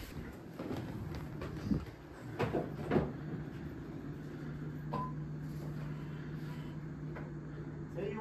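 Shop room sound: a few knocks and clicks in the first three seconds, then a steady low hum from about three seconds in.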